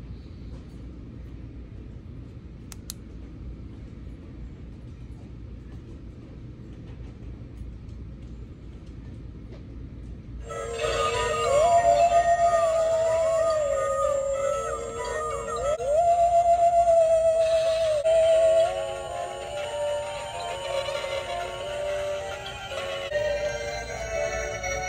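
Low in-store room tone. About ten seconds in, a battery-powered animated Halloween haunted-house globe decoration starts playing a loud, spooky electronic tune with a gliding, wavering melody.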